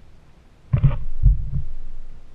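Two low knocks on a kayak's hull, about half a second apart. The first is sharper; the second is a deeper, heavier thud.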